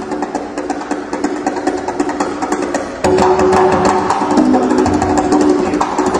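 LP congas played in a fast solo: rapid dense slaps and strokes mixed with short ringing open tones, getting louder about halfway through.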